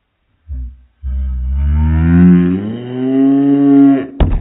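A voice slowed right down and dropped far in pitch, heard as one long, deep moan whose pitch rises partway through. A brief low sound comes just before it.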